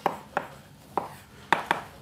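Chalk on a blackboard, writing letters: about half a dozen sharp taps as the chalk strikes the board.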